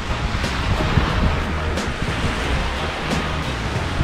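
Small waves washing onto a pebbly lake beach in a steady wash of surf, with wind rumbling on the microphone.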